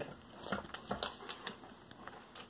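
Faint, irregular light ticks and crinkles of a paper shopping bag as a cat shifts inside it and a dog noses at it.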